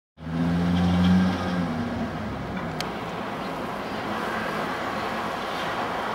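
A car's engine running with a steady low hum, which gives way after about two seconds to an even rushing of road noise.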